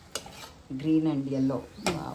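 Slotted metal spoon stirring chopped vegetables and lentils in a metal kadai, clinking against the pan once just after the start and again near the end. A woman's voice speaks briefly in between.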